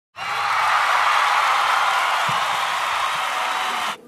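Audience applauding, a dense, even clatter of clapping that stops abruptly near the end.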